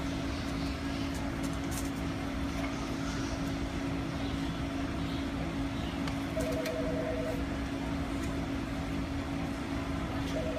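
Steady low hum of shop machinery with a constant drone. About six and a half seconds in there is a short run of rapid electronic beeping.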